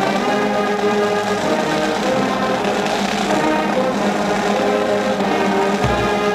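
College marching band playing held brass chords that change every second or so, with a low drum stroke near the end.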